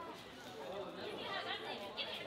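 Indistinct chatter: several people talking in the background, no words clear.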